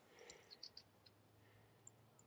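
Near silence, with a few faint, short clicks about half a second in and one more near the end.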